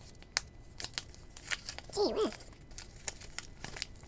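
Folded paper wrapping being unfolded and torn open by hand, with sharp crinkles and crackles throughout. A brief vocal sound about two seconds in.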